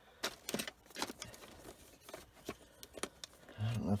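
A scatter of light clicks and taps from plastic cassette tape cases being handled in a storage case.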